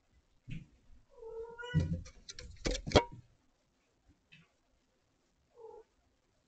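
A domestic cat meows once, a call of a little under a second, followed by a quick run of sharp knocks, the loudest at about three seconds in. A short second call comes near the end.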